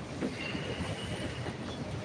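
Low background room noise of a crowded courtroom, with a faint thin high steady whine for a little over a second.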